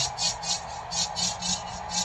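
A rhythmic percussion beat from the concert sound system: short, hiss-like hits about four to five a second with soft low thumps under them, over faint crowd noise.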